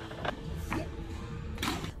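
The bumper plates and sleeves of a loaded Eleiko barbell clinking and rattling as it is lifted: a few sharp clicks over a faint steady hum.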